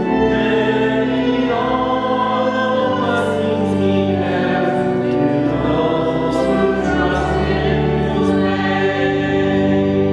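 Choir singing a slow hymn in long held notes.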